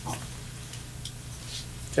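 A marker on a glass lightboard makes a brief, faint squeak right at the start as an equation is finished. After it comes a quiet room with a steady low electrical hum and a couple of faint ticks.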